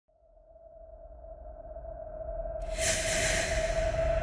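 Intro sound effect: a single steady synthesized tone over a low rumble fades in and grows louder. About two and a half seconds in, it opens into a bright, hissing whoosh.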